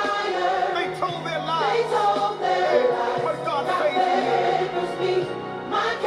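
Gospel music: a choir singing over a band, with a bass line moving in long held notes.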